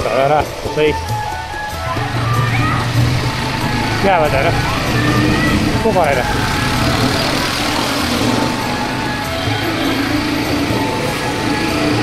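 Motorcycle engine running while the bike gathers speed in traffic, with steady wind noise on the microphone. Voices and music come through over it, with rising and falling calls about 4 and 6 seconds in.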